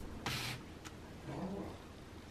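A hand sets a chocolate bar down on a wooden tabletop: a brief rustle of the wrapper sliding, then a faint tap. About a second and a half in there is a faint, short, low sound.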